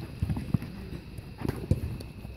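Soccer players running on artificial turf: scattered footfalls, with a few short, sharp thumps of feet and ball.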